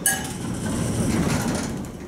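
Elevator doors sliding open, a continuous rushing run of about a second that fades near the end. A brief ringing tone sounds at the very start.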